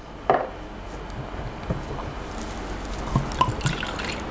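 Whisky pouring fast from a porcelain flagon into a glass, a steady splashing stream, after a single light knock near the start.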